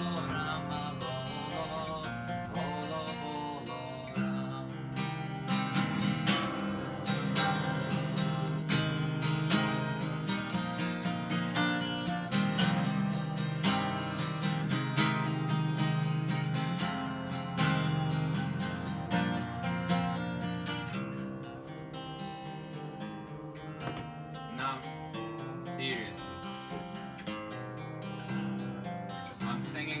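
Acoustic guitar strummed in a steady rhythm, fuller and louder through the middle stretch, then softer from about two-thirds of the way in.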